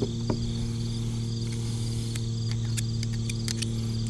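A steady low hum with crickets chirping faintly, and a few faint clicks as a knife blade smears grease over the chamber mouths of a revolver cylinder.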